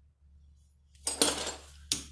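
Metal clanking and rattling as a chuck key is handled at a metal lathe's three-jaw chuck: a sharp clank about a second in, a short rattle, and another clank near the end, over a steady low hum.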